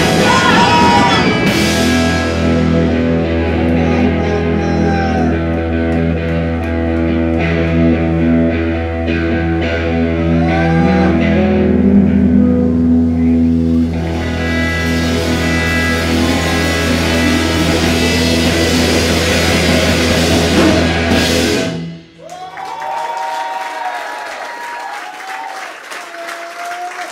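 Punk rock band playing live: electric guitar, bass guitar and drum kit at full volume over a long held low note, stopping abruptly about 22 seconds in. The crowd then cheers and applauds.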